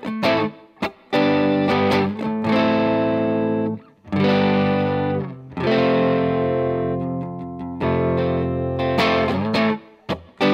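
Electric guitar played through a Wampler Tumnus (Klon-style) overdrive pedal into an AC-style amp, with the gain low at about ten o'clock and the treble just past noon: a mostly clean rhythm tone that breaks up slightly when the strings are hit harder. A series of chords, each let ring for one to two seconds and then cut off, with a few short, quick chord hits near the end.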